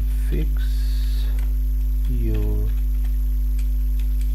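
Loud steady electrical mains hum on the recording, with scattered computer keyboard clicks as text is typed and a short murmured voice sound about two seconds in.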